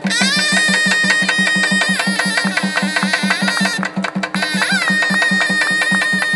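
Tamil folk dance music for karagattam: a shrill reed pipe holds long high notes over a fast, even drum beat. The pipe glides up into its note at the start, breaks off briefly a little after the middle, then holds the note again.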